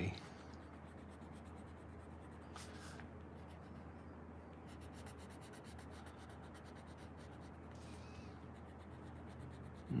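A coloured pencil shading lightly on paper: a faint, steady rubbing as skin colour is laid on, with one brief sharper scratch about two and a half seconds in. A low steady hum sits underneath.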